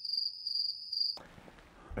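Crickets chirping: a high, steady trill that pulses a few times and cuts off abruptly a little over a second in.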